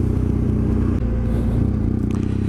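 BMW F800GS motorcycle's parallel-twin engine running at a steady speed while riding, an even engine note with no change in pitch.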